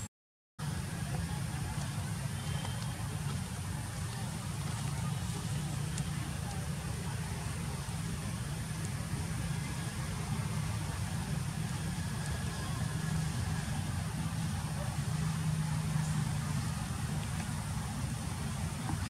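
Steady low rumble of outdoor background noise, like wind on the microphone or distant traffic, after about half a second of silence at the very start.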